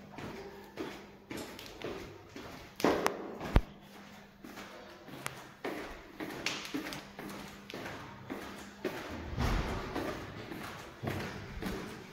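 Footsteps going down tiled stairs and along a tiled hallway, a step every half second or so, with a louder thump and a sharp knock about three seconds in. A faint low hum lies under them.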